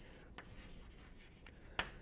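Chalk writing on a blackboard: faint scratching, with a light tap a little way in and a sharper tap near the end.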